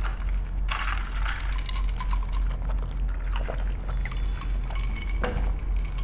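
Iced drink sucked up through a straw from a glass, with a few light clicks along the way.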